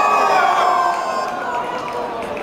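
Spectators shouting and cheering, several high voices overlapping in one long held yell that slowly drops in pitch and fades about a second and a half in, leaving a murmur of chatter.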